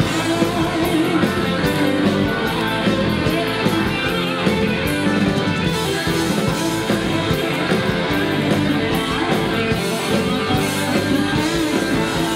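Rock band playing live, an instrumental passage with electric guitar prominent over bass, drums and keyboards.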